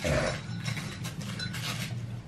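Wrapping paper rustling and tearing in short crinkly bursts as a present is unwrapped, the loudest at the very start, over a steady low hum.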